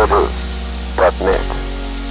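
Short channel-intro jingle: a sustained low chord with two pairs of short, sharp calls laid over it, one pair at the start and another about a second later.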